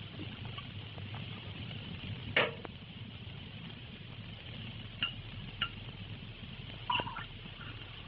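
Steady hiss and low hum of an old film soundtrack, with a few sharp clicks: the loudest about two and a half seconds in, and three more in the second half.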